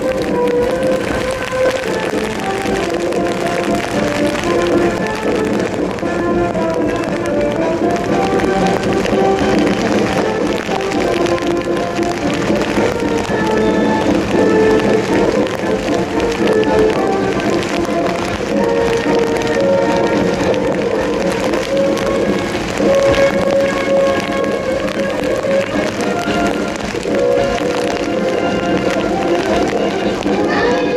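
Military band playing a march, with held brass chords.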